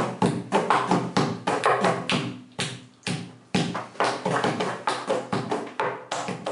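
Rhythmic percussive music: a steady run of sharp tapped strikes, about four or five a second, each ringing briefly, with a short break about three seconds in.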